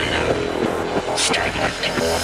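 Beatless electronic music passage: sustained synth layers over a low hum, with swept noise effects rising and falling twice in the upper range.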